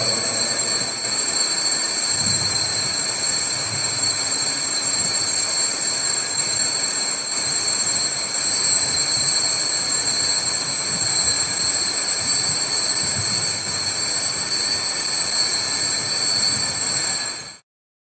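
Altar bells rung continuously at the elevation of the host after the consecration at Mass: a steady jangling wash with several high ringing tones. It cuts off suddenly near the end.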